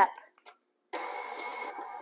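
KitchenAid Classic Plus stand mixer starting about a second in and running steadily, its paddle creaming butter and sugar in a glass bowl.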